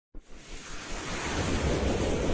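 Whoosh sound effect of an animated logo intro: a rush of noise like wind or surf that starts with a short blip and swells steadily louder.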